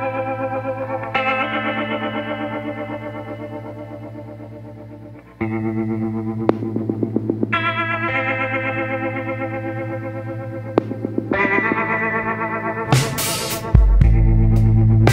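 Background music: sustained, effects-laden electric guitar chords with a pulsing rhythm, the chord changing every few seconds and the music growing louder and fuller near the end.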